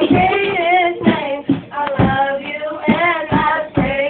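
Young women singing a slow gospel worship song, with long held notes that glide in pitch. Regular low thumps keep the beat underneath.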